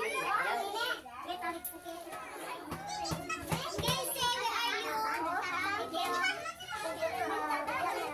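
Lively, overlapping voices of children and adults talking and calling out over one another, with music playing in the background.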